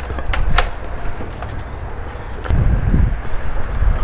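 Strong wind rumbling on the microphone, heaviest about two and a half seconds in, with a few sharp clicks and knocks.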